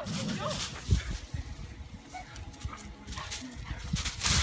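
Bernese Mountain dog giving short high whimpers at the start, followed by scattered low thumps with one sharper knock about a second in.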